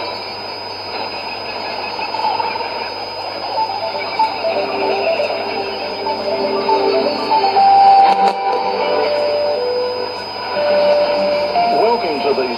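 Music from a shortwave AM broadcast playing through a portable receiver's speaker, with a slow line of held single notes over steady static hiss, in audio cut off sharply above about 5 kHz.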